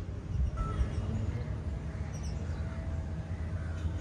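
Outdoor city ambience: a low, uneven rumble of wind on the microphone, with a few faint bird calls over it.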